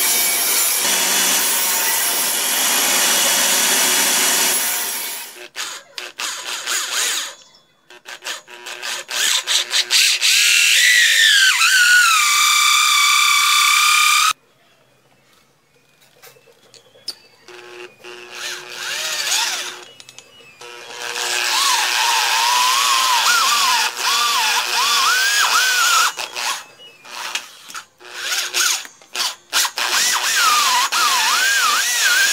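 Small table saw cutting a sheet of MDF for the first few seconds, followed by a motor whine that falls in pitch and stops. Later an electric drill in a bench drill stand runs a hole saw through MDF, its pitch wavering as it loads, with short bursts as it is started and stopped.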